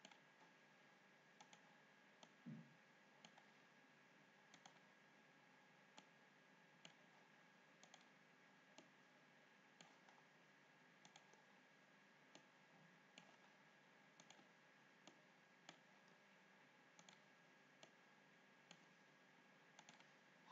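Near silence with faint computer mouse clicks about once a second as control points are picked and dragged, and one soft thump about two and a half seconds in.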